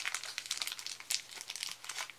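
A thin plastic wrapper crinkling in irregular crackles as it is peeled open by hand around a small toy.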